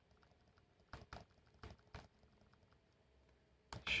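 A few faint, irregular clicks from a laptop's keys and touchpad buttons, mostly between one and two seconds in.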